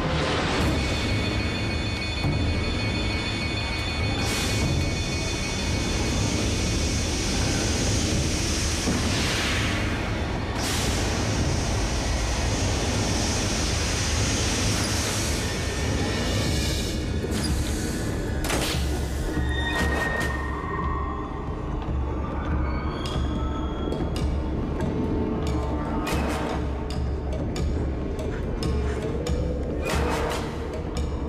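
Tense, ominous background music over a deep steady rumble. From about two-thirds of the way in, a run of sharp percussive hits.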